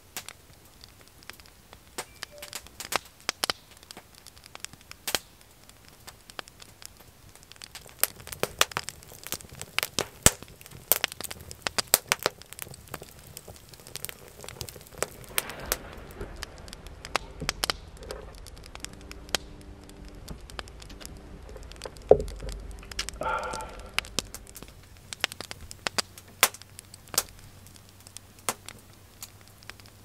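Small wood fire crackling, with irregular sharp pops and snaps scattered throughout.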